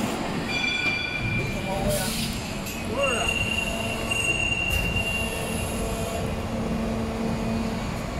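PET preform injection moulding machine running in a factory: steady machine noise with high-pitched whines, one about half a second in and a longer one from about three to five seconds in.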